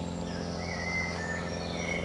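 Wild birds singing: thin, drawn-out whistled notes, some gliding in pitch, over a steady low background hum.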